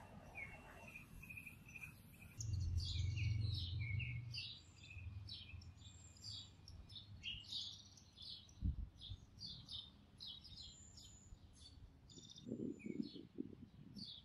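Small birds chirping and calling in quick, short notes, with a low rumble that starts suddenly about two seconds in and fades over the next few seconds, and a brief low thump near the middle.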